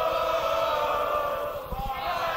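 Hardcore rave music from a live cassette tape recording: a steady held tone over a hazy wash, in a gap between the MC's chanted lines.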